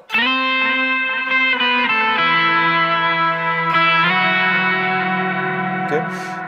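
Electric guitar playing a slow lead phrase of single held notes, moving to a new note about four times and letting each one ring on.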